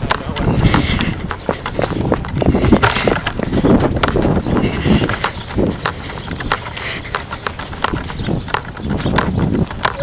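Footsteps of someone hurrying along a path with a handheld camera, heard as uneven clicks and knocks over a low rumble of handling noise, with faint indistinct voices.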